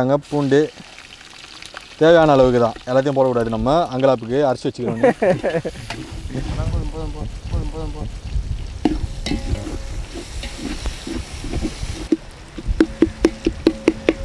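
Fried onions, ginger-garlic paste and tomatoes sizzling in hot oil in a large aluminium pot over a wood fire, while a metal ladle stirs them. Talking fills the first few seconds before the sizzle takes over. Near the end the ladle scrapes and clicks against the pot in a quick run, about four or five strokes a second.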